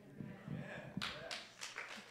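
A congregation applauding lightly, with scattered hand claps starting about a second in.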